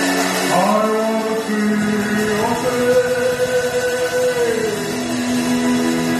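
A man singing a slow gospel worship song through a microphone and PA, holding long notes that slide between pitches, over sustained accompaniment.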